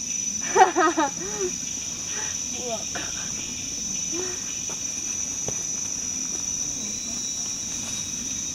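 Steady, high-pitched drone of forest insects. A person's voice sounds briefly about half a second in, with fainter voices after.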